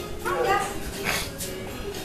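A toddler's short high-pitched squeal that rises and falls, followed about a second in by a breathy burst like a laugh. Faint background music runs underneath.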